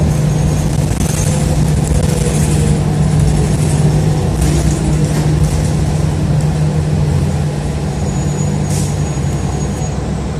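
Inside a moving city bus: a steady low engine and drivetrain drone over road noise, with a few brief high-pitched ticks near the middle and near the end.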